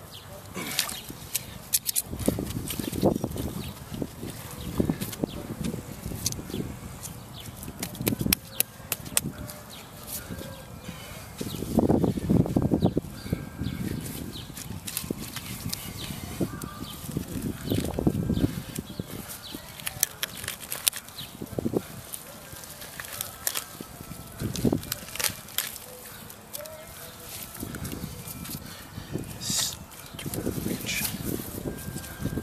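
Pipe wrench turning a rusty steel water riser out of its threaded tee: scattered metal clicks and scrapes from the wrench and threads, with a few louder, lower bursts, the loudest about twelve seconds in.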